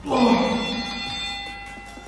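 Workout interval timer chime: a single bell-like electronic tone rings out suddenly and fades over about a second and a half, signalling the end of the 35-second work interval.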